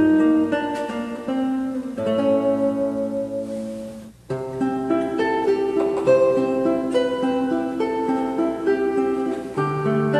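Nylon-string classical guitar played solo and fingerpicked: a melody over sustained accompanying notes. The sound fades into a brief pause about four seconds in, then the playing picks up again.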